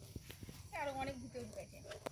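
A few faint clicks of scissors snipping at a plastic bottle, with a person's voice speaking briefly about a second in.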